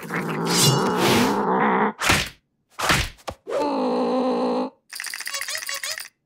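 Cartoon slapstick sound effects and a character's vocal noises: a loud, strained groan-like sound for about two seconds, then two short sharp hits. A held, wavering tone follows, and near the end a fast run of clicks.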